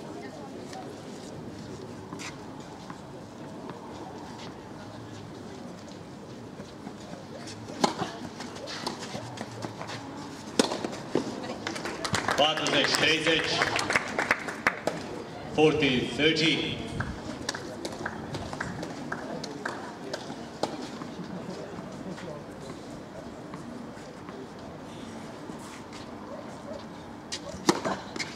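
Open-air tennis court between points, over a steady background noise: people talk twice around the middle, and scattered sharp knocks of tennis balls being bounced and struck sound throughout, with a serve hit near the end.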